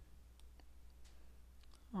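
Near silence with a few faint, sharp clicks spread through it.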